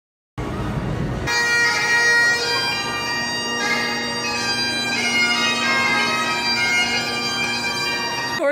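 Bagpipes playing a tune over their steady drone, starting suddenly a moment in.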